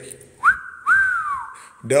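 A man whistling a two-note wolf whistle: a short rising note, then a longer high note that falls away.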